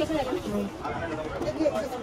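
Indistinct talking and chatter of several voices, with no other distinct sound.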